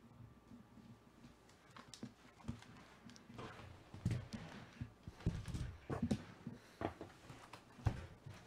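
Scattered knocks, taps and rustles of hands handling things on a tabletop, with a sharp knock near the end as hands take hold of a cardboard trading-card box.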